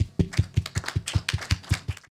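Audience applause at the end of a talk, heard as a quick run of distinct, sharp hand claps, about seven a second.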